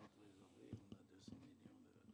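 Near silence, with faint indistinct voices murmuring in the background.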